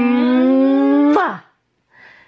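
A woman humming one long 'mmm' note that creeps slightly higher in pitch, ending a little over a second in with a quick upward swoop and drop.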